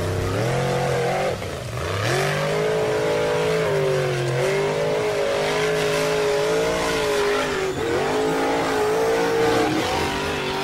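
Radio-controlled toy jeep's small electric motor and gearbox whining, the pitch rising and falling with the throttle and dipping twice, over tyres crunching on gravel.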